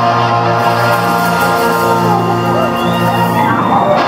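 A rock band's final chord held and ringing out, electric guitars sustaining over bass. The audience's whoops and cheers rise near the end as the chord dies away.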